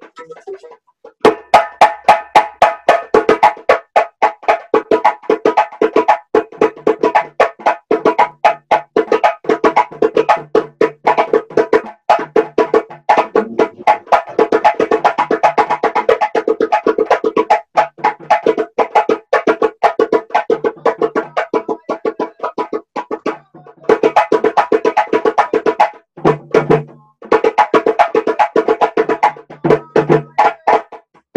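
West African drumming: a djembe struck by hand together with drums beaten with sticks, playing a fast, dense interlocking rhythm. The strokes start about a second in and break off briefly twice near the end.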